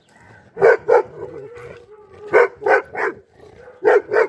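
A dog barking during rough play: two barks about a second in, three in quick succession from about two and a half seconds, and one more near the end.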